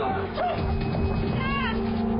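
Film score with a steady low drone, and a short high-pitched cry from a person in the struggle about one and a half seconds in.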